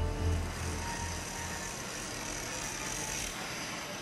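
Background music fading out over the first second or so, giving way to the steady noise of a large fabrication shop.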